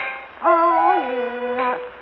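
Kunqu opera singing from a 1931 Victor gramophone recording: a voice holds a long note that falls in pitch, with accompaniment. There is a short break in the sound just before the note starts, and another near the end.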